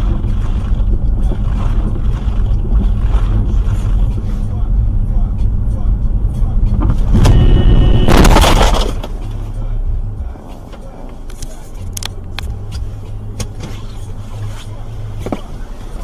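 Car cabin engine and road rumble from a dashcam car on a snowy street. About seven seconds in, a car horn sounds, followed by a loud noisy burst as another car cuts across close in front. The rumble is quieter afterwards.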